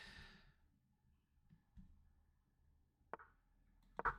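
Near silence: room tone, with a soft exhale at the very start and a single faint mouse click about three seconds in.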